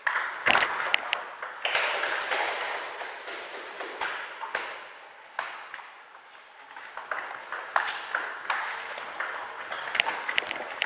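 Table tennis ball clicking off the rubber of the paddles and bouncing on the table during doubles rallies. The sharp clicks come at uneven intervals, two near the start and a quicker run of them in the last few seconds.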